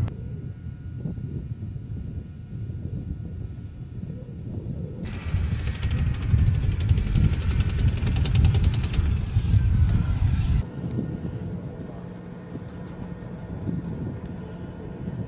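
M1 Abrams tanks running: a low engine rumble, joined about a third of the way in by a louder stretch of hissing and fast-rattling track noise that cuts off suddenly, leaving a quieter low hum with a faint steady tone.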